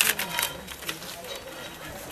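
Paper envelope being torn open: a quick run of crackling rips in the first half second, then softer paper rustling.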